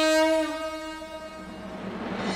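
A conch shell (shankh) blown in one long held note that dips slightly in pitch about half a second in and then fades away.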